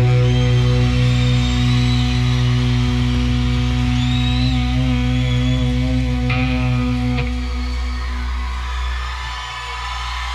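Electric guitar and bass chord ringing out through stage amplifiers at the end of a rock song, held as a steady sustained tone. The low notes cut off about seven seconds in, leaving a quieter amplifier hum.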